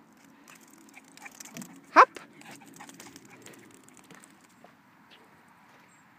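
A Lhasa Apso gives one short yip that rises sharply in pitch about two seconds in, over faint background.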